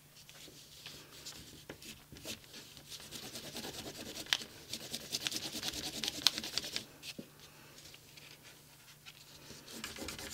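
A burnishing tool rubbed hard back and forth over the back of a Citrasolv-soaked laser print laid face down on cotton drop cloth: a soft, dry scratchy rasp of many short strokes. It is busiest in the middle, with a couple of sharper clicks, and grows quieter near the end.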